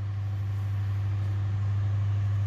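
A steady low hum with a faint even hiss above it, unchanging throughout.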